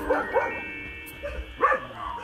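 A dog barking: a quick run of short barks at the start, then another couple of barks near the end.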